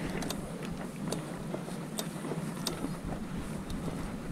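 Mountain bike riding over a dirt forest trail: steady tyre rumble and wind noise on the camera microphone, with scattered clicks and rattles from the bike over the ground.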